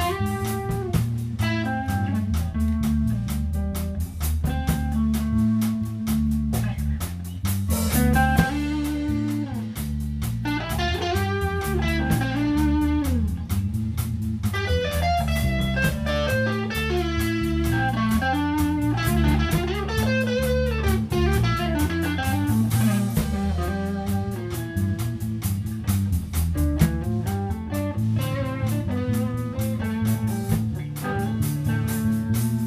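Live band playing: an electric guitar plays a lead line with pitch bends over bass guitar and a drum kit.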